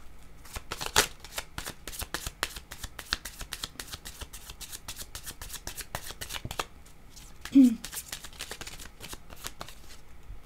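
A deck of tarot cards being shuffled by hand: a dense run of quick card clicks, with a brief voiced sound about three-quarters of the way through.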